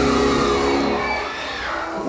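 Live 1960s soul band music with organ, holding sustained chords with no singing.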